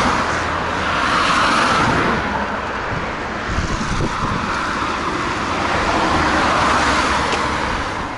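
Road traffic: cars passing close by on a multi-lane road, their tyres and engines making a steady hiss that swells as each car goes by, once at the start and again near the end.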